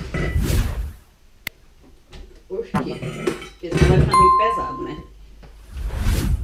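Kitchen handling noise: a stainless steel bowl and a blender jar knocked and clattered about, with a sharp click and, about two-thirds of the way through, a single clear bell-like ding held for about a second.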